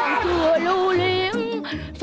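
Female vocals holding a long, wavering sung note over a Vietnamese ballad backing track with a steady bass line. The note is sung through pursed lips.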